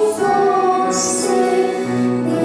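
Small mixed choir of men, women and children singing in parts, with piano accompaniment. The voices hold long notes, with a sharp 's' consonant sung together about a second in.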